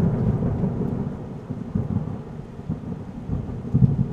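A deep rumble with a rain-like hiss, like thunder: it starts loud and slowly fades.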